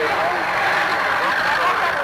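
A crowd of many voices shouting and calling over one another in a continuous clamour, over a faint low steady hum.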